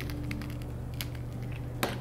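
Faint, scattered light clicks and ticks as salt and pepper are added by hand to a sweet potato toast, with a sharper click near the end, over a low steady hum.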